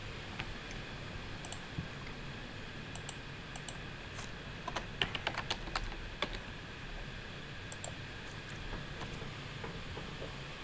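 Computer keyboard typing: a quick run of keystrokes about five seconds in, with scattered single clicks before and after, over a steady low room hum.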